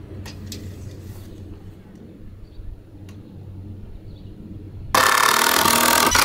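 Quiet handling with a few light taps and knocks, then about five seconds in a cordless drill starts suddenly and loudly, driving a screw into a pine 2x4.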